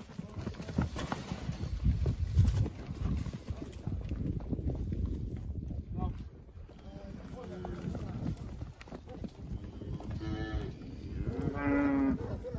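Beef cows mooing: several calls in the second half, the longest and loudest near the end. Before that, hooves scuffle and thud on the dirt as the group moves through the pen.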